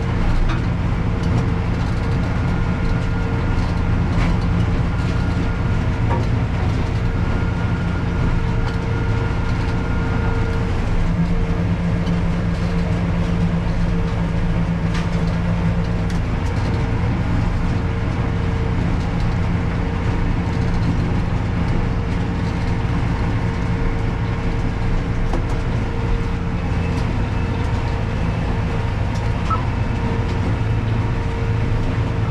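Tractor engine running steadily under load, heard from inside the cab, as it pulls a PTO-driven stalk shredder through stubble: a constant low drone with a steady tone over it and a few faint ticks.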